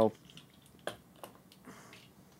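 Faint handling noises from a small plastic oil bottle and a trumpet being handled on a desk: a sharp click about a second in, a lighter tap shortly after, and a soft rustle near the end, with near quiet between.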